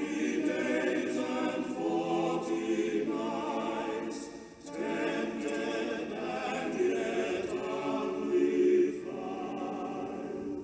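A choir singing a hymn in sustained phrases, with short breaks about four and a half seconds in and again near nine seconds.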